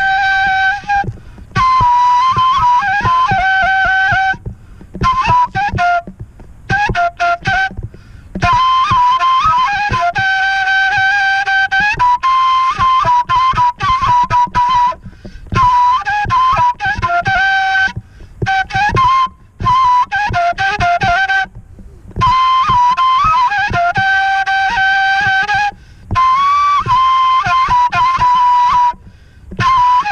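A folk flute played as a melody of held notes and quick ornamented turns. The phrases are broken by short breath pauses.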